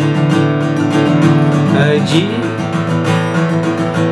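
Fender cutaway steel-string acoustic guitar strummed in a steady rhythm, with a man's voice singing a phrase about two seconds in.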